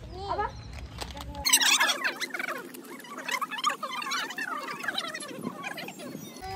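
A group of women's and children's voices overlapping, high-pitched and lively, starting abruptly about a second and a half in. Before that, a single woman's voice over a low rumble.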